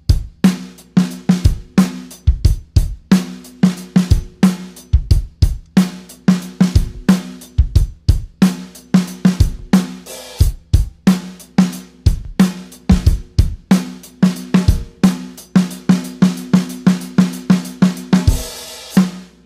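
Dixon drum kit with Istanbul Agop cymbals playing a steady sixteenth-note groove: hi-hat sixteenths and kick drum, with the snare struck on the off-beat sixteenths.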